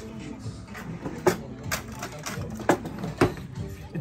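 A spoon clicking and scraping against a jar as ginger-garlic paste is scooped out, several sharp clicks over background music.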